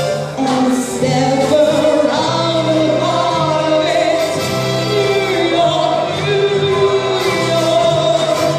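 Live female lead vocal, held notes with vibrato, amplified through a handheld microphone and PA, over a school band's keyboard and grand piano accompaniment with steady low sustained notes underneath.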